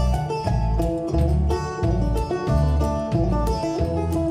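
Banjo and upright double bass playing an instrumental passage without vocals: bright picked banjo notes over a steady low bass beat.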